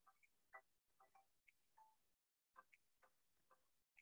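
Near silence with only faint, irregular clicks and ticks, about three a second, from clay being shaped by hand on a miniature tabletop pottery wheel.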